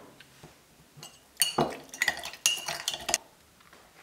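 Metal spoon knocking and clinking against the inside of a ceramic mug of cooked tapioca pearls: a quick run of clinks in the middle, with a short ring after each.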